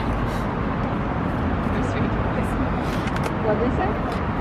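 Steady outdoor background rumble of road traffic, with faint voices in the distance.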